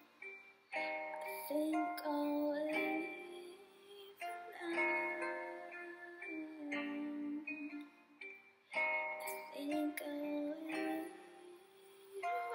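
Music: a song with plucked-string chords under a pitched melody line, moving in phrases of about two seconds.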